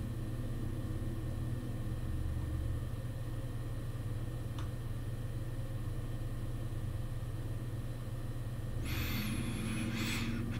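Steady low background hum of room and recording noise, with a faint click about four and a half seconds in and a faint high whine near the end.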